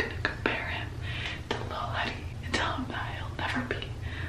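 A woman whispering close to the microphone, breathy and without voice, over a steady low hum.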